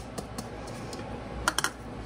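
Light clicking taps of a small glass prep bowl being knocked against the mixing bowl to empty out baking soda. About one and a half seconds in come a few sharper clinks of small glass bowls being picked up off the glass cooktop.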